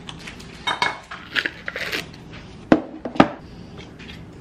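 Cutlery clinking and scraping against a ceramic bowl and a plastic tub as cottage cheese and strawberries are spooned into the bowl. Two sharp clinks come about half a second apart near the end.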